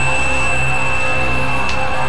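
Experimental electronic synthesizer drone: steady high held tones over a dense low droning bed, loud and unchanging.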